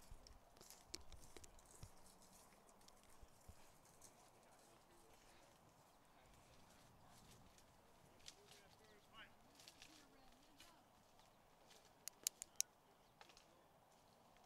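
Near silence: faint outdoor ambience, with three quick faint clicks a little after twelve seconds.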